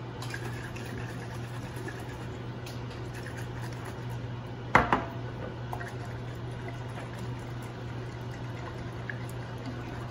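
Epsom salt solution sloshing in a lidded glass mason jar as it is shaken to dissolve the salts. About five seconds in there is a sharp double knock, the loudest sound.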